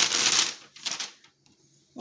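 A brown paper bag rustling as it is upended and shaken out, with small art supplies dropping onto a countertop and a few light clicks about a second in.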